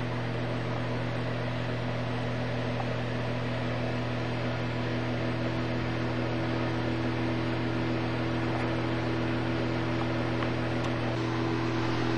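Steady electrical hum with a constant hiss over it, unchanging throughout.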